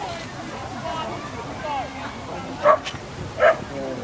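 Border collie barking twice, two short loud barks about three-quarters of a second apart, over background chatter.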